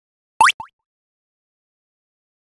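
A short cartoon-style pop sound effect, a quick upward-gliding bloop, followed at once by a fainter second bloop, about half a second in.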